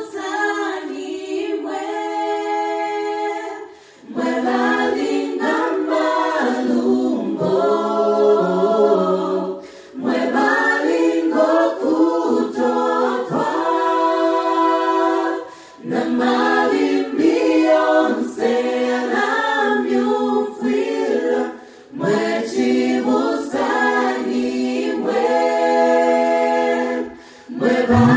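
A mixed group of men and women singing a gospel song a cappella in harmony, with no instruments. The singing comes in phrases of about six seconds, each followed by a brief breath.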